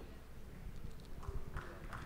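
Soft, irregular knocks and bumps of a handheld microphone being handled as it changes hands between speakers, over faint room noise.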